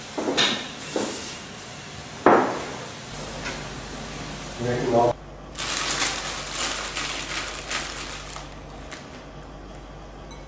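Bowls and dishes set down on a wooden tabletop: three sharp knocks in the first few seconds. Later comes a soft rustling as a hand handles shredded bamboo shoots in a bowl.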